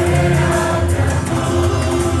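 Mixed church choir of men and women singing a Malayalam devotional song in Mayamalavagowla raga, holding sustained notes.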